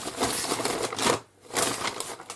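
Plastic packaging crinkling as it is handled. There is a longer stretch of rustling, a brief pause past the middle, then a shorter burst near the end.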